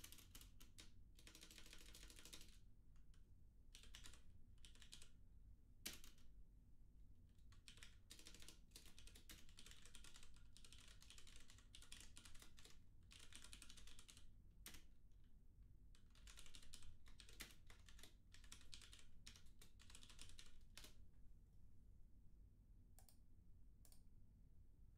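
Faint typing on a computer keyboard: bursts of rapid key clicks with short pauses between them, thinning out near the end, over a low steady hum.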